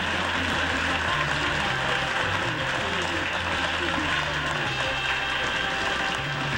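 Studio audience applauding while music plays under it, low held notes changing in steps.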